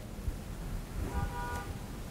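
Quiet room tone, with a brief faint tone lasting about half a second a little after one second in.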